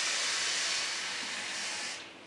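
Kitchen faucet running in a steady hissing stream, filling a plastic measuring cup with water, and shut off right at the end.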